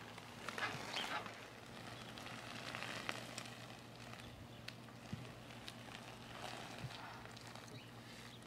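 Faint outdoor noise: a low steady hum under a light crackly hiss, with scattered small clicks.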